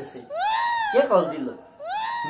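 A man's high-pitched, drawn-out laughing cry, rising and falling in pitch, followed near the end by the start of a second one.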